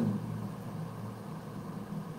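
Steady low background hum with no other sound.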